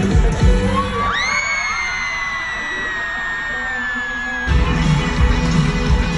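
Live pop concert music. About a second in, the beat drops out under a single long high tone that slides up and then slowly sinks. The full beat comes back about four and a half seconds in.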